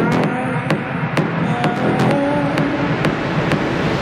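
Techno music in a breakdown with the kick drum and deep bass dropped out. Ticking percussion about twice a second continues over wavering synth tones.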